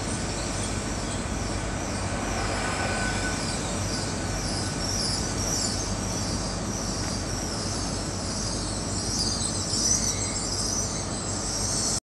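Great Western Railway Class 800 train pulling out of the station, a steady rolling rumble with a wavering high-pitched wheel squeal that grows stronger in the second half.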